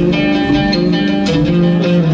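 Live instrumental music: plucked strings, guitar-like, picking out a melody over held low notes.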